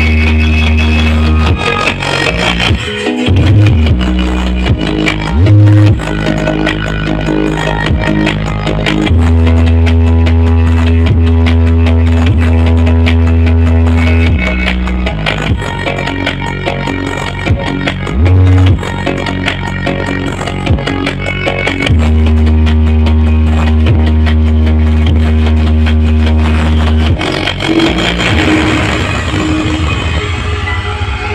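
Music played loud through a large stacked sound system of subwoofer and speaker boxes during a sound check, with long held bass notes lasting several seconds each. The sound is "cukup ngeri" (pretty scary).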